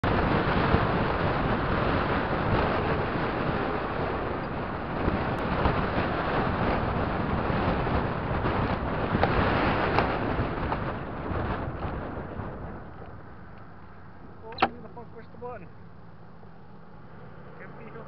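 Road and wind noise of a moving car, heard from inside, steady and loud, then dying away over a couple of seconds as the car slows to a stop at a red light. A single sharp click about three-quarters of the way through, with a few brief faint tones after it.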